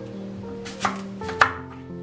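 Chef's knife slicing through an apple and striking a wooden cutting board twice, about half a second apart, the second cut the louder.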